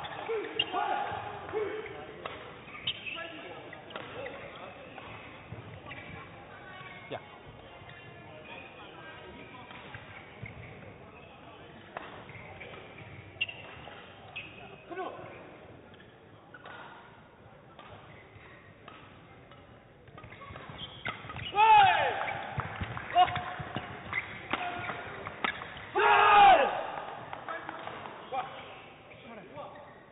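Badminton rally in a sports hall: a shuttlecock is struck sharply by rackets again and again, with some squeaks. Later, two loud shouts from the players ring out, the second near the end.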